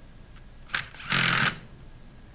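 Cordless power driver with a socket extension spinning down a cap screw on the pump's outer chamber: a brief blip, then a loud half-second run about a second in.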